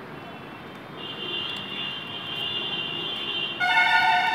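Vehicle traffic with a steady high whine, then a vehicle horn honks loudly near the end for under a second.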